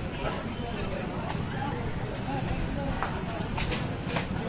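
Busy street ambience: a steady rumble of vehicle engines with the chatter of people nearby, and a few sharp clicks near the end.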